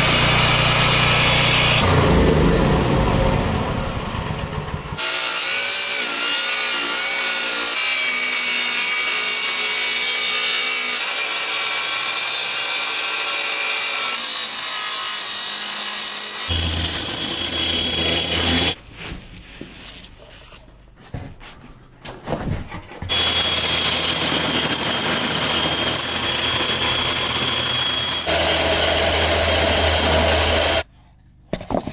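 Table saw and Makita circular saw ripping laminated veneer lumber (LVL). It runs as a series of separate cuts, the sound changing abruptly from one to the next, with a quieter stretch about two-thirds of the way through.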